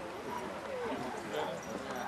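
Indistinct voices of several people talking at once some way off, a low jumble of chatter with no clear words.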